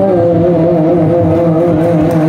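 A man singing one long, wavering held note, accompanied by a harmonium, tabla and guitar.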